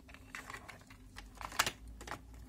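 Small plastic toy car clicking and clattering as it is pushed along the plastic deck of a toy transporter trailer: a string of light, sharp clicks, the loudest about one and a half seconds in.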